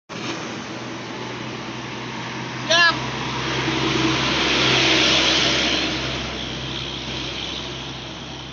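Highway traffic passing close by, with one vehicle rushing past loudest in the middle, over a steady low engine hum. Just under three seconds in there is one short, loud, pitched burst.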